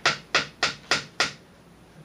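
Five knocks on a door, about three a second.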